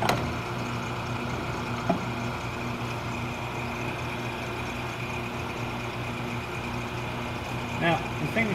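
Steady hum of the glove box's running machinery, a motor-driven blower or pump, with a sharp click right at the start.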